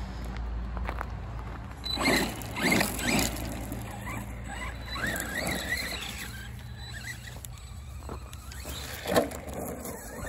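Arrma Big Rock 3S RC monster truck's brushless electric motor whining, its pitch rising and falling as the throttle is worked, with bursts of tyres crunching over gravel.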